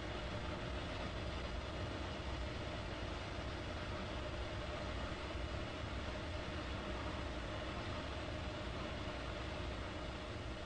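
Steady, even mechanical running noise, like an engine or machinery, with a faint steady hum and no change throughout.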